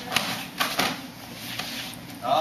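Martial-arts hand strikes and blocks landing on a partner, with the swish of karate uniform fabric: three quick slaps within the first second, then quieter rustling.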